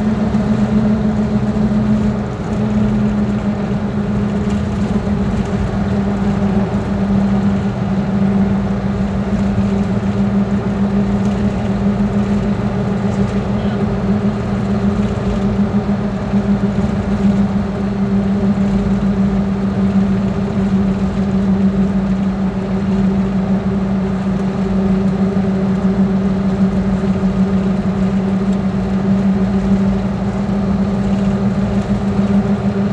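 A moving road vehicle's engine and tyre noise heard from inside the cabin: a steady drone that dips slightly in pitch about two seconds in.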